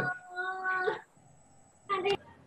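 A single drawn-out, high-pitched call lasting well under a second and rising at its end, heard through a participant's newly unmuted microphone on a video call. A brief sharp noise comes near the end.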